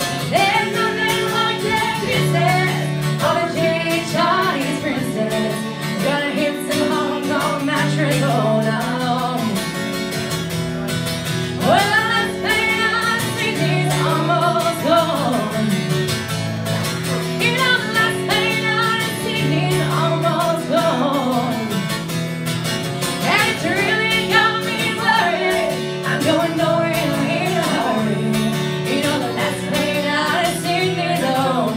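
A woman singing a song live with guitar accompaniment, the guitar keeping a steady repeating bass line under the vocal melody.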